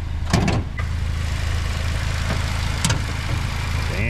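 Car hood release pulled and the hood unlatching: a quick cluster of clicks and a thud about half a second in, then another sharp click near three seconds, over a steady low hum.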